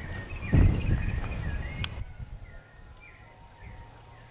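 Small birds chirping repeatedly in short, pitch-bending calls, over a low rumble with a sharp thump about half a second in. The rumble drops away about halfway through, leaving fainter chirps.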